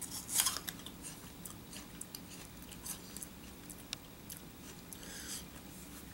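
A crunchy bite into a raw apple about half a second in, then chewing with scattered small crunching clicks.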